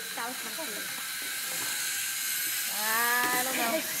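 Children's voices over a steady hiss: brief chatter, then a drawn-out cheer near the end that runs into laughter.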